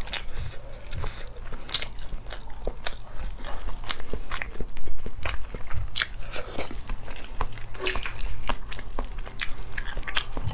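Eggshell crackling and snapping under the fingers as it is peeled off a boiled egg, in many small sharp cracks, close to the microphone. Partway through come mouth sounds of the egg being bitten and chewed.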